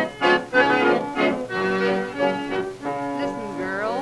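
Instrumental passage between sung verses on a 1935 Decca 78 rpm record of a vocal song with instrumental accompaniment, with held notes and a note sliding upward near the end.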